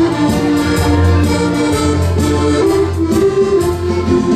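Several accordions playing a musette-style dance tune together, backed by bass and drums keeping a steady beat.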